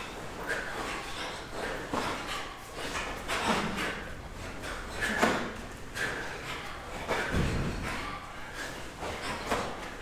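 Several karate students' sharp, forceful breaths, one with each punch, coming irregularly and out of step with one another as each works at their own tempo, with a low thud about seven seconds in.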